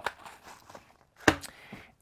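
A single light knock about a second in as a small box of BBs is set down on the table, with faint handling rustle around it.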